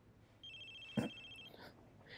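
A phone ringing in the cartoon's soundtrack: a single ring of about a second with a fast flutter. A short knock falls in the middle of the ring.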